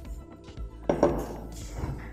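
Background music, with glass clinking against a ceramic plate about a second in as water is poured from a glass into the dish.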